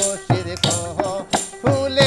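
Baul jikir folk song: men's voices singing over a steady beat of small hand frame drums and jingling tambourine, about three strikes a second.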